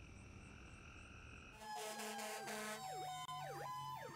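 Fire engine leaving on an emergency run. About a second and a half in, a loud horn sounds for about a second, then a fast yelping siren sweeps up and down about twice a second over a steady siren wail that slowly rises in pitch.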